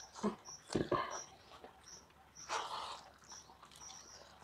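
Close mouth and hand noises of eating rice and curry by hand from a steel plate, with a few louder sudden sounds about a second in and a longer one past the middle. A short high-pitched note repeats about every half second in the background.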